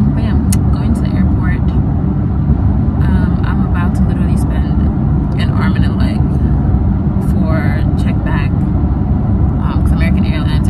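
Steady low road and engine rumble inside a moving car's cabin, with a woman talking over it.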